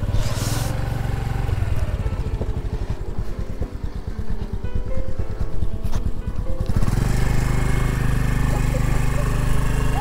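A small two-wheeler engine running at low speed over rough ground. Its firing pulses come through as an even throb for a few seconds mid-way, then it runs steadier and a little louder from about seven seconds in.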